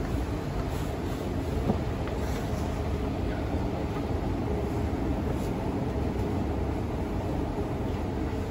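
Steady low mechanical rumble of a moving escalator running downward.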